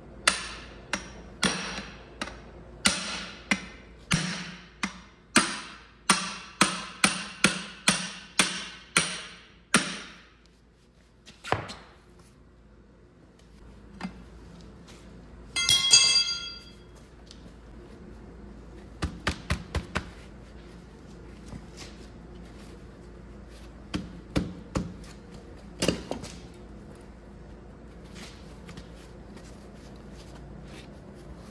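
Hammer blows on a stuck spin-on oil filter canister: a run of about eighteen sharp, ringing metal strikes, speeding up to about two a second and stopping about ten seconds in. A single ringing metallic clang follows a few seconds later, then scattered light clicks of tools on metal.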